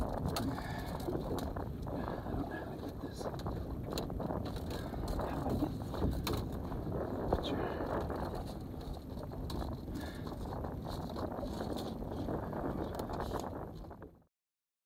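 Steady background noise on an open boat deck, with scattered clicks and knocks from hands and gear being handled and faint, indistinct voices.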